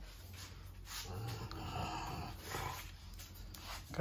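French bulldog sighing, a breathy huff through the nose from about one to three seconds in.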